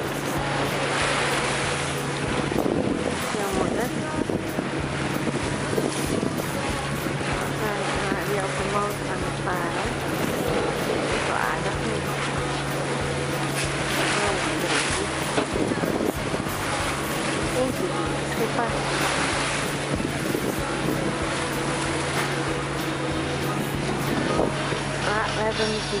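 Sea wash and waves against a sailing yacht's hull under way, in irregular surges, with wind buffeting the microphone. A steady low drone runs underneath.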